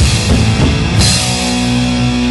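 Live rock band playing electric guitars, bass and a drum kit: quick drum hits, then about a second in a loud crash and a long held chord.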